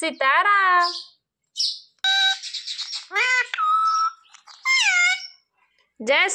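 Rose-ringed parakeet mimicking human speech, a word like "shri" at the start, followed by a string of short calls and squawks. The harshest, rasping squawk comes about two seconds in.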